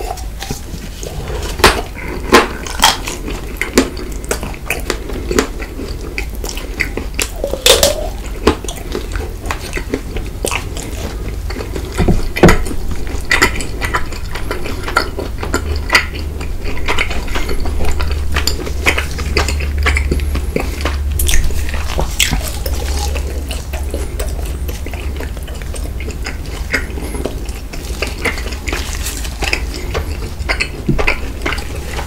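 White chocolate egg being bitten and chewed close to the microphone: irregular sharp snaps of the chocolate shell breaking, with chewing and mouth sounds between.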